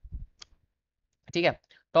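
A few faint clicks of a stylus tapping on a tablet screen while writing, separated by near silence; a short spoken syllable falls in the second half.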